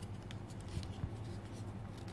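Paper rustling and crinkling as it is folded by hand around a piece of thermocol (polystyrene foam), with a steady low hum underneath.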